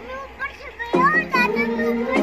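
Children's high-pitched voices calling out over background music with held tones and a steady beat; the music drops out for about the first second and comes back.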